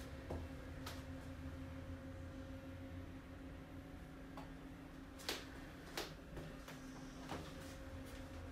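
Steady low hum inside an elevator cab, with about five sharp clicks over it. The loudest click comes a little past five seconds in and another follows a second later.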